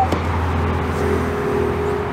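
Honda Odyssey power sliding door opening after its handle is pulled: a steady motor hum with a thin, even whine above it.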